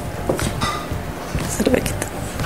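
Strung glass beads clicking and clinking lightly against each other and the table as the beaded strands are handled, a few scattered clicks.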